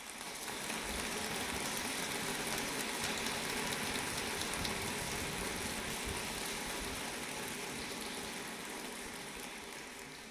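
Audience applauding, swelling within the first second and slowly tapering off near the end.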